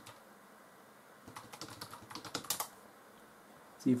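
Typing on a computer keyboard: a quick run of keystroke clicks lasting about a second and a half, starting about a second in, with the last few keys the loudest.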